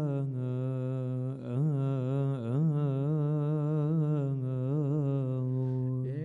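A male voice chanting a Coptic liturgical hymn in one long melisma, a single syllable drawn out with rippling turns in pitch, breaking off near the end.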